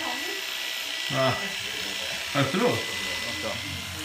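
Oster electric hair clippers running with a steady electric hum that grows louder near the end.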